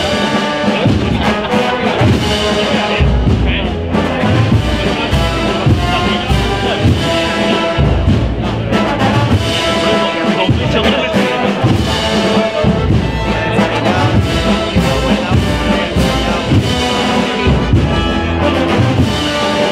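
A Spanish brass band (banda de música) playing a slow processional march, with trumpets and trombones carrying the melody over low drum beats.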